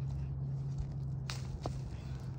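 Hand weeding in garden soil: a hand weeding tool scraping the dirt and weeds being pulled among garlic plants, with two short sharp scrapes about a second and a half in. Under it runs a steady low hum.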